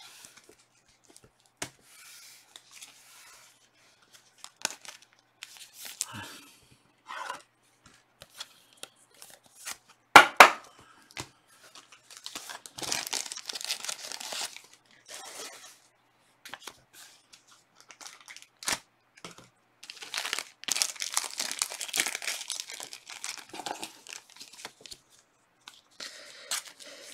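Trading-card pack wrappers being torn open and crinkled by hand, in two longer crackling stretches, along with the light rustle and clicks of cards being handled. A sharp click about ten seconds in is the loudest sound.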